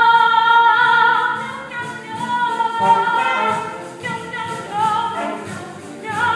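A chorus of voices singing long held notes, loudest in the first second or so, then going on into further sung phrases.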